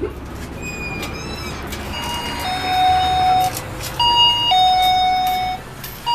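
Electronic shop-door entry chime sounding a two-note ding-dong, a short higher note then a longer lower one, twice, a second or so apart.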